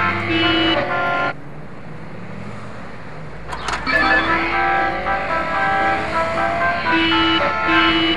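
A simple electronic tune breaks off about a second in, leaving about two and a half seconds of steady street-traffic noise with a low rumble. A few sharp clicks come near the end of the gap, then the tune starts again.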